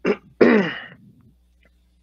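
A man sneezing once: a short catch at the start, then a loud burst about half a second in, with the voice falling in pitch.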